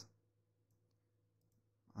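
Near silence with two faint computer mouse clicks, about a second apart.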